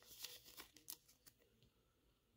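Faint crinkling and a few small clicks from a trading card being handled between the fingers in the first second, then near silence.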